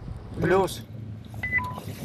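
Steady drone of a moving car heard from inside the cabin, with a short two-note electronic beep about one and a half seconds in: a high tone, then a lower one.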